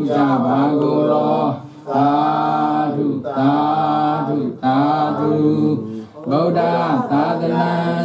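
A man's voice chanting a Buddhist devotional recitation in a steady, melodic chant. It goes in phrases of about a second and a half, each separated by a short breath.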